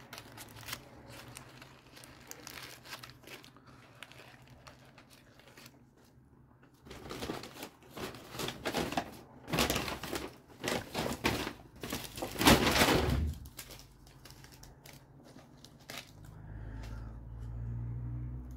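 Paper burger wrapper crinkling in a run of bursts as a Whopper is handled and bitten, loudest near the end of the run, with soft chewing clicks before it. A low rumble comes in near the end.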